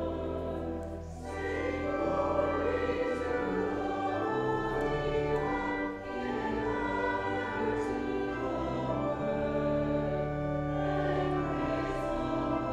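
Church choir singing a sacred piece over a steady low bass, in long held notes with short breaks between phrases.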